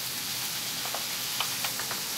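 Liver slices and sweet pepper strips sizzling in oil in a hot non-stick pan as a wooden spatula stirs them, with a steady hiss and a few light clicks.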